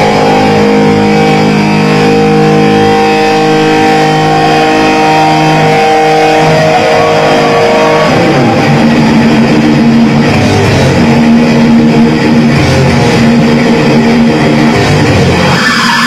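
Death metal band playing live and loud: distorted electric guitars hold long chords for about eight seconds, then the band breaks into a driving repeated riff.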